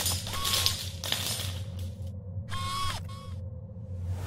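Sound effects of an animated logo intro: hissing whooshes and two short pitched tones, the second dropping in pitch as it ends, over a steady low hum.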